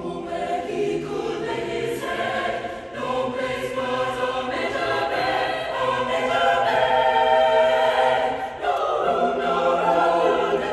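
Mixed high-school concert choir singing sustained chords in full harmony, swelling louder about halfway through, with a brief breath break shortly before the end.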